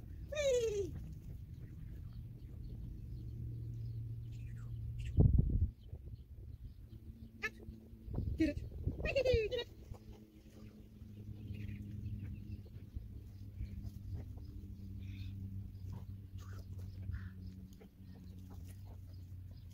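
An animal calling twice, each a short cry falling in pitch, about nine seconds apart, over a steady low hum; a heavy thump about five seconds in.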